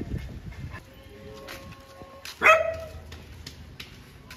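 A dog barks once, a single short bark about halfway through.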